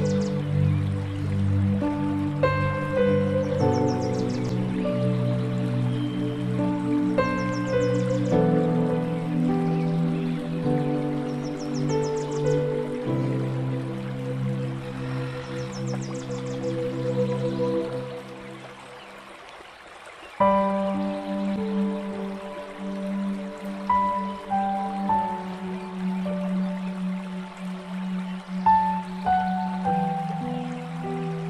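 Calm new-age background music of sustained chords and slow high notes. It fades out about 18 seconds in and starts again abruptly about two seconds later.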